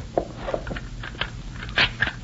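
Radio-drama sound effect of a door being locked: a run of short metallic clicks and rattles from a key and bolt, the loudest near the end.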